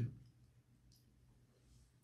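Quiet room tone in a small room, broken by a single faint, sharp click about a second in.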